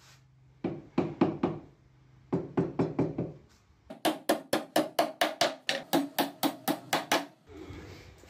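Steel hammer driving nails into a plywood frame, in sharp blows: a short flurry about half a second in, another about two and a half seconds in, then a steady run of about four blows a second from four seconds in until just after seven seconds.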